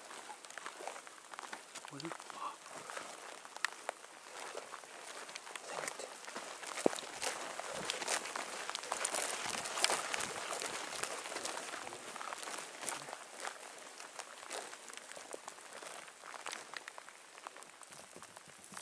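Footsteps swishing and crackling through tall dry grass, with many scattered sharp snaps, busiest and loudest in the middle.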